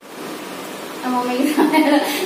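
Steady background hiss of the recording, then a woman laughing from about a second in.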